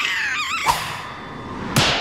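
Cartoon character's wavering, wobbling cry, followed by noisy slapstick sound effects and a sudden thud near the end.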